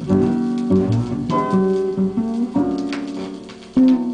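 Music from a vinyl record playing on a Gradiente DS40 belt-drive turntable through Aiwa SX-NH66 speakers, with a loud passage coming in near the end.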